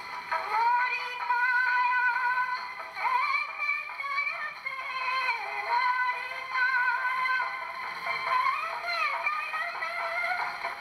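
Wind-up horn gramophone playing a gramophone record: a melody of long, wavering high notes, sung or played, coming through thin and tinny with no bass.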